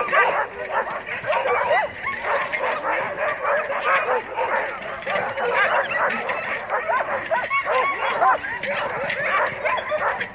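Many Alaskan huskies in a sled dog yard barking and yelping all at once: a dense, unbroken din of overlapping high calls.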